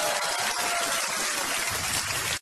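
A steady rushing hiss, like gushing water, with a faint low hum coming in near the end.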